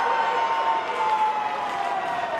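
Arena crowd noise with one long drawn-out shout from a spectator, slowly falling in pitch.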